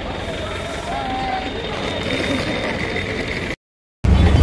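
Steady roadside traffic noise with faint voices of people nearby. It cuts off suddenly just before the end.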